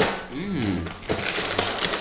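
Crinkling and rustling of a plastic cereal bag being handled, the dry cereal rings shifting inside. There is a short voice sound about half a second in.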